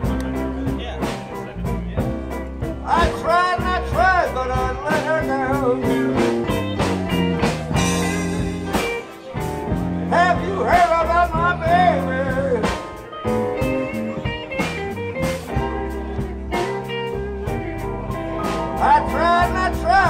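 Live blues-rock band playing: electric guitars, bass and drums. A lead melody of bending notes comes in about three seconds in, again about ten seconds in, and near the end.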